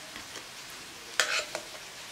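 A short, loud scrape-and-clink about a second in as a baked phyllo pastry is set down with a utensil in a glass baking dish, with a few small ticks and a steady faint hiss around it.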